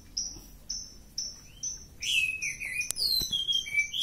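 Caged orange-headed thrush (anis merah) singing: a run of five short high whistles about half a second apart, then a fuller warbling phrase of gliding, falling notes. There is a single sharp click near the middle.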